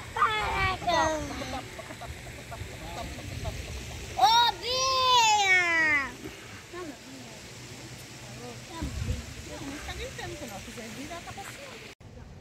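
A young child's high-pitched voice calling out twice, each call rising and then falling in pitch, the second one longer, about four seconds in.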